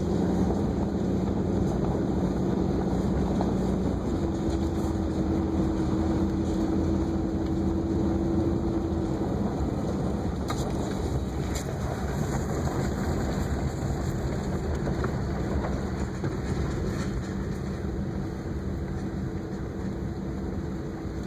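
Vehicle engine and tyre noise heard from inside the cab while driving a sandy dirt trail: a steady drone whose hum steps up in pitch about four seconds in and fades back about five seconds later.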